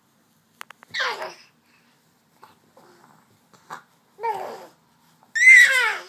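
Six-month-old baby's high-pitched squeals, three of them, each sliding down in pitch; the last, near the end, is the longest and loudest.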